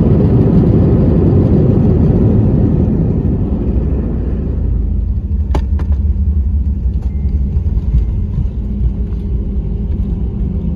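Jet airliner's engines and landing rumble heard from inside the cabin during the landing roll, loud at first, then easing off over the next few seconds as the aircraft slows on the runway. Two sharp clicks a little over halfway through.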